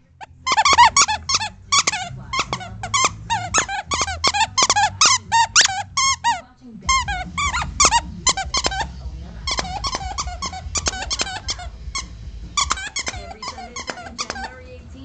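A plush purple dinosaur squeak toy squeaking over and over as a dachshund chews it. The squeaks are quick and bend up and down in pitch, several a second, in three long runs with short breaks between them.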